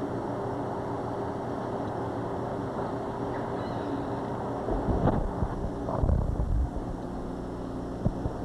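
Steady low hum on the camcorder's audio, then low rumbling bumps from about five seconds in, loudest around six seconds: handling or brushing noise on the microphone.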